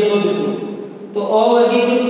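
A voice chanting in long held notes, with a short break about a second in before the chant resumes.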